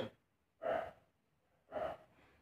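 Two short, breathy exhalations from a man, about a second apart.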